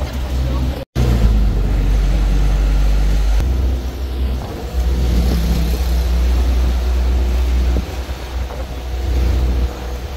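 Low rumble of a moving road vehicle heard from on board, with wind buffeting the microphone. The sound cuts out completely for an instant about a second in, then returns.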